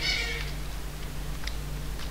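A short, high-pitched cry held at a level pitch for under a second near the start. About halfway through there is a single keyboard click, over a steady low hum.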